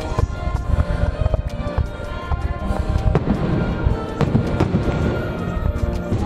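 Fireworks display: shells bursting in repeated bangs over a low booming rumble, with two louder bangs a little past the middle. Music with long held notes plays underneath.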